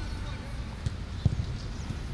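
A football being kicked on grass in a passing drill: two short, sharp thuds about a second in, over a steady low rumble.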